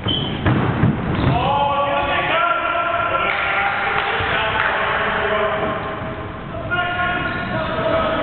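Two thuds of a football struck on a sports hall floor about half a second in, followed by players' calls and shouts ringing in the echoing hall.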